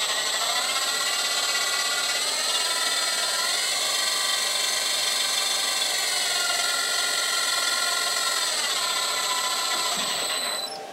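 A CNC router's electric spindle motor running with a steady high whine. Its pitch steps up in stages over the first few seconds, then steps back down near the end as the speed is turned up and down. It is spinning a holder in its collet to check for wobble, which is slight.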